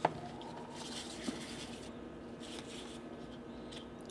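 Faint swishing of petrol in a plastic tub and handling of a small plastic PSU cooling fan as a gloved hand works it in the liquid to free its stiff, gummed-up bearing. A sharp click at the very start and a smaller one about a second in.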